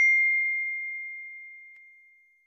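A notification-bell 'ding' sound effect: one bright chime struck once, ringing as a single high tone that fades away over about two seconds.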